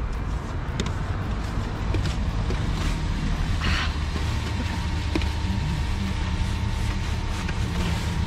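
A car engine idling steadily while a long-handled snow brush sweeps snow off the car's windows, with one louder swish about halfway through.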